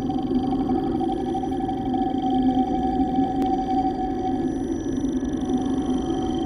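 Intro sound design: a sustained electronic drone of steady held tones, with a faint click about three and a half seconds in.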